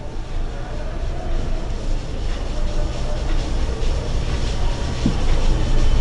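A whiteboard being wiped clean with a hand-held duster: a rubbing noise over a steady low rumble.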